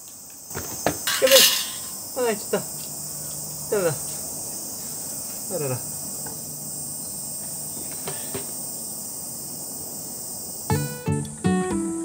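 Steady high-pitched chorus of summer cicadas. In the first six seconds there are a few sharp knocks of a hand tool on green bamboo and four short falling exclamations from a man's voice. Acoustic guitar music comes in near the end.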